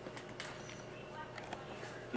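Quiet pause: faint steady room hiss with a couple of light clicks.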